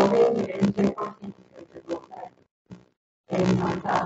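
A person talking in short phrases, with a pause about two and a half seconds in.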